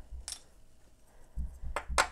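A few light clicks and taps as a small diecast toy car body and its plastic window piece are handled and set down on a wooden workbench: one click about a quarter second in, then a couple more with low bumps near the end.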